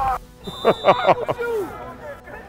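A voice in several short syllables over background music.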